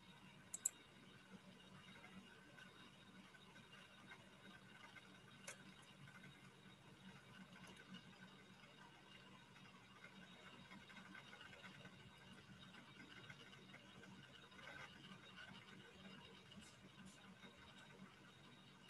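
Near silence: faint room tone broken by a few sharp clicks, a quick pair just under a second in and a single one about five and a half seconds in.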